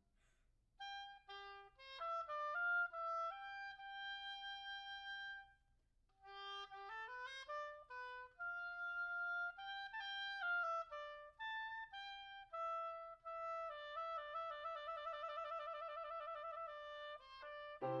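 Unaccompanied solo woodwind playing a melodic classical passage: sustained notes mixed with quick runs and leaps, a brief pause about six seconds in, then wavering notes with vibrato through the second half.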